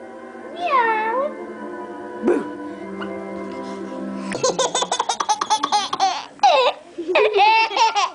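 A baby laughing in quick, repeated high-pitched bursts from about halfway, after a high gliding squeal about a second in. A simple electronic toy tune with steady notes plays underneath in the first half.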